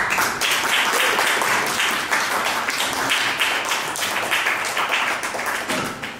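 Audience applauding: dense clapping that starts suddenly and dies away after about six seconds.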